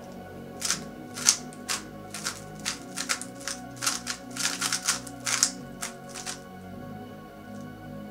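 Cubicle Labs GTS2M 3x3 speedcube being turned fast in a solve: a quick, irregular run of plastic clacks for about six seconds, which stops near the end.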